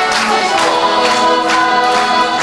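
A bailinho troupe singing live: a chorus of voices with a female singer, accompanied by strummed guitars and an accordion, with the strummed chords falling about twice a second.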